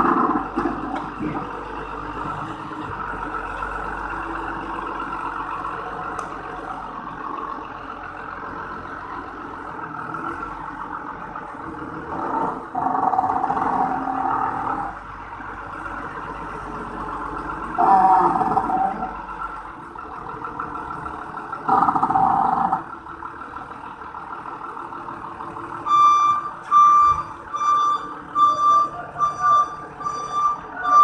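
A forklift's engine running under load while it carries a heavy steel plate, rising in three louder surges as it works. Near the end its reversing alarm starts, beeping about twice a second.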